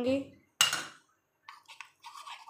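A metal spoon strikes a ceramic bowl once with a sharp clink, then scrapes and clicks against the bowl as it starts stirring a thick paste of ground fenugreek and yogurt.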